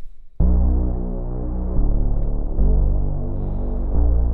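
Layered synthesizer sub bass from Bitwig's Polysynth, five layers stacked in octaves, playing long held bass notes. It starts about half a second in and changes note twice.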